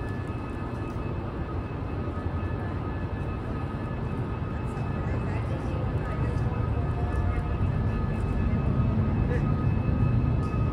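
Steady low rumble of a large engine-repair hall, with a few faint steady machine hums above it, slowly growing louder toward the end.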